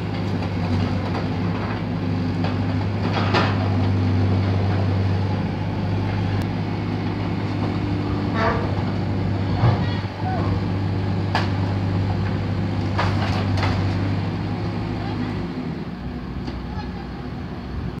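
A skid-steer loader's engine running steadily under work, with scattered sharp knocks. The engine drone drops off about three-quarters of the way through.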